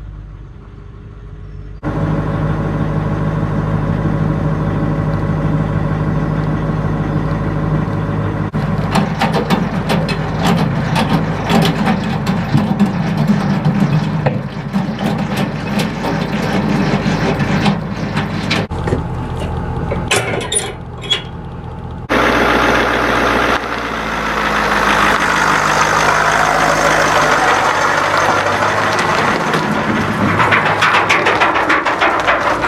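A pickup truck's engine running, the sound changing abruptly several times: a steady idle hum at first, then noisier running with many clicks, and a broad hissing noise near the end.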